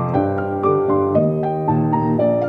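Instrumental break of a pop song, led by piano: a melody of short notes moving over held chords, with no singing.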